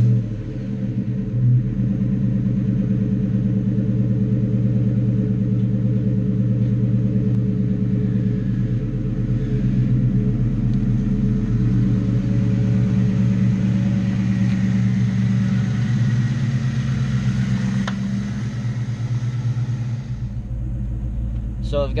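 A 2000 Mustang GT's 4.6-litre two-valve V8 idling steadily through Flowmaster 40 mufflers just after a cold start, with a brief rise in level about a second and a half in. Near the end the sound drops in level.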